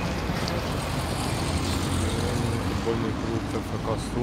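Street traffic: cars passing on a road nearby, a steady low rumble, with faint voices in the second half.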